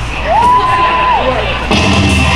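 A single long shout that rises, holds and falls away. Near the end a wrestler's entrance music kicks in loudly over the PA.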